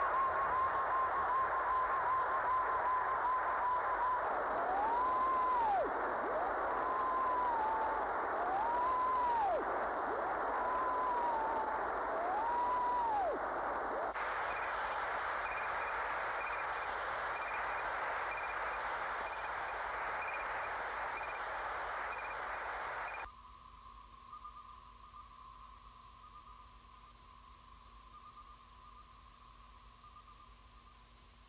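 Radio-static-like electronic hiss from the track's outro, with a wavering steady tone and a few short tones that rise and fall. About three-quarters of the way in it cuts down suddenly to a faint, thin hiss.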